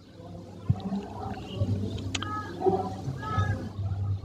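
A faint voice on an old 1982 tape recording, an audience member asking a question, over a steady low hum. Two sharp clicks come at about a second in and a little past halfway.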